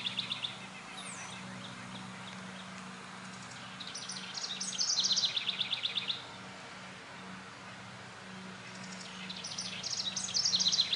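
A songbird singing quick phrases of rapid notes that step downward in pitch, one about four seconds in lasting around two seconds and another starting near the end, over a faint steady low hum.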